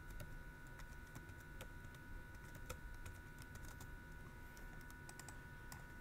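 Computer keyboard typing: faint, irregular key clicks, with a faint steady tone underneath.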